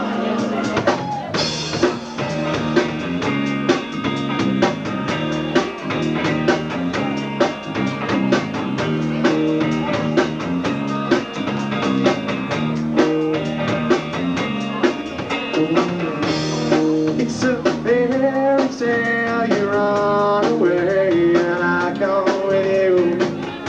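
Rock band playing live: drum kit with steady hits, electric guitars and bass. A singer's voice comes in about eighteen seconds in.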